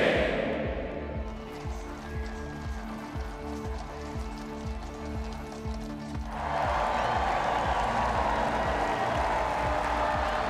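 Music with held chords over a steady low beat. About six seconds in, a large crowd's cheering and clapping swells up over it and carries on.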